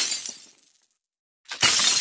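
Glass-shattering sound effect: one crash tailing off in the first second, a short silence, then a second crash about one and a half seconds in.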